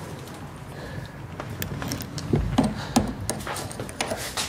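Quiet handling noise from metal hand tools: a few faint clicks and soft knocks as a pair of pliers is picked up and brought to the exhaust tip.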